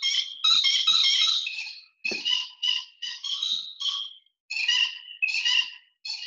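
A sampled human voice played back as notes on a GarageBand sampler and pitched up very high, chipmunk-like, in a run of about ten short notes.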